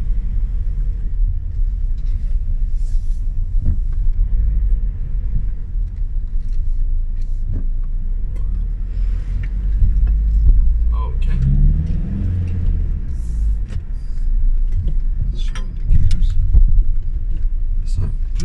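Cabin sound of a 2008 Volkswagen Jetta's 2.0-litre four-cylinder turbodiesel driving slowly: a steady low rumble, with the engine note rising about two-thirds of the way through as it pulls, and a few scattered light clicks.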